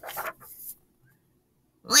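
A large picture-book page being turned, a short papery rustle, then near the end a woman's voice begins a loud, held "Quack!" in imitation of a duck.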